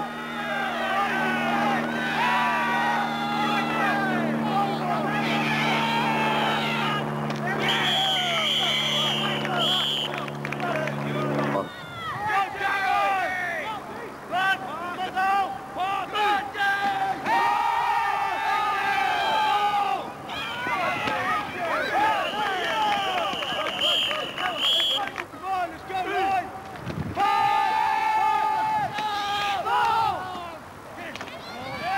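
Overlapping shouts and calls from football players and sideline spectators, with several long, drawn-out calls, as the offence lines up and runs a play. A low steady hum runs underneath for the first third and cuts off suddenly.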